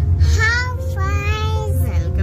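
A small child singing one long, drawn-out high note, starting about half a second in and fading near the end, over a steady low rumble of a car cabin.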